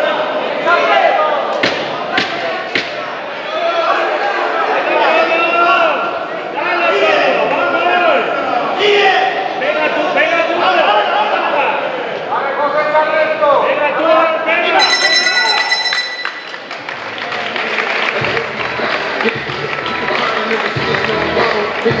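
Shouting voices from the crowd and corners during a boxing bout. About two-thirds of the way through, the ring bell rings for about a second to end the final round. Then music with a steady beat starts.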